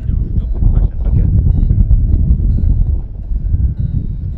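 Wind buffeting the microphone: a loud, uneven low rumble throughout.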